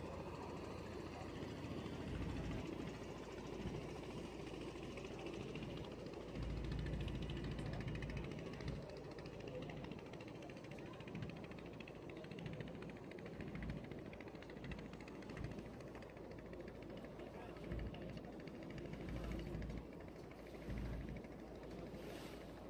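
Steady noise of a boat under way on the river, with low wind buffets on the microphone every few seconds.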